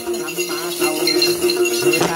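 Hand-shaken clusters of small metal bells (chùm xóc nhạc) jingling continuously under women's Then ritual singing, a Tày/Nùng chant with a wavering, ornamented melody.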